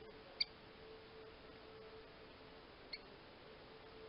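Rufous-collared sparrow (tico-tico) giving two short, sharp chip calls about two and a half seconds apart, the first much louder, over a faint steady hum.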